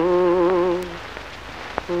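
A man's singing voice holding a long note, its vibrato settling into a steady tone that stops about a second in, leaving a steady hiss until the next phrase starts at the very end.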